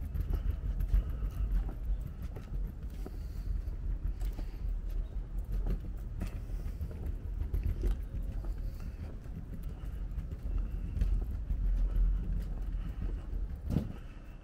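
Footsteps walking along a wooden boardwalk, with a low, uneven rumble under them and one louder knock near the end.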